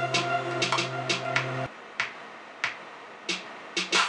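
R&B beat playing back from the studio speakers in a small room: sustained synth chords over a programmed drum pattern. Under two seconds in, the chords cut off abruptly, leaving only the drum hits.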